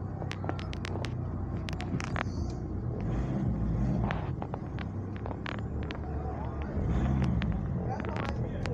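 Car engine and road rumble heard from inside the cabin while driving slowly. The low engine note swells twice as the car picks up speed. Scattered light clicks and knocks run through it.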